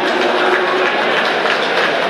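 Crowd of swim-meet spectators cheering and yelling at a steady loud level, with some held shouts standing out.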